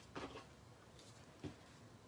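Mostly near silence, with two faint soft taps or rustles, one just after the start and one a little past halfway, of cardstock greeting cards being handled and laid down on the table.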